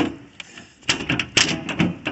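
Steel hood of a 2010 Nissan Murano clicking and rattling against its latch as it is wiggled free by hand. It sets off a run of sharp, irregular clicks starting a little under a second in.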